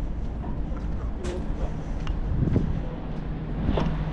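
Steady low rumble and wind noise on a cruise ship's open deck at sea, with brief snatches of people's voices a few times.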